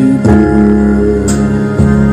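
Instrumental backing track of a slow song with no singing: held keyboard and guitar chords, with a new chord struck about a quarter second in and another near the end.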